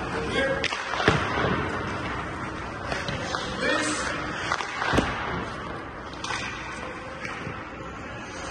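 Two sharp hockey puck impacts, about a second in and again about five seconds in, during goalie shooting practice, with background voices and music.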